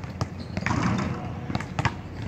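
Basketballs bouncing on a hard outdoor court: a few sharp thuds, two of them close together near the end.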